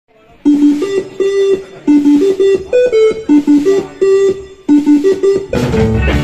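Electric guitar playing a short riff of picked notes on its own, the same phrase coming round about every second and a half. The full rock band, drums and bass included, comes in loud just before the end.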